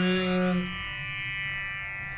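Sanskrit verse chanting: a held sung note ends about two-thirds of a second in, leaving a steady musical drone sounding alone.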